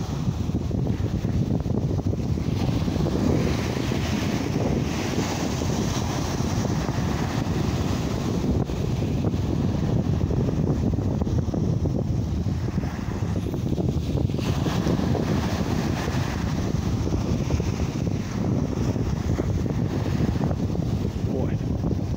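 Wind buffeting the microphone in a steady low rumble, over the wash of small choppy waves on the shore.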